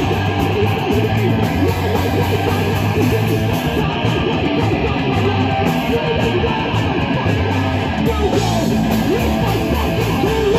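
A live heavy rock band playing: distorted electric guitar through a Marshall amp, with electric bass and drums. The low bass notes change every second or so.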